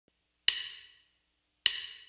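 Two sharp, bright wood-block-like clicks a little over a second apart, each ringing briefly: a count-in click ahead of the band.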